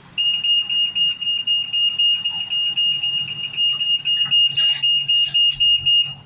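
A bus exit-door warning buzzer sounding as the doors close: one loud high-pitched tone pulsing rapidly for about six seconds, then stopping. A short burst of noise comes about four and a half seconds in.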